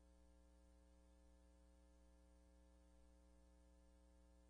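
Near silence: a faint steady electrical hum with evenly spaced overtones, under a light hiss.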